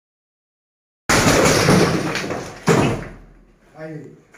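Sledgehammer striking an interior brick wall during demolition: a loud crash about a second in with breaking masonry and falling debris, then a second sharp blow about a second and a half later.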